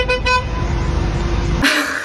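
A car horn honking a few quick toots from behind, over the low rumble of an idling car heard from inside its cabin; a short burst of noise comes near the end.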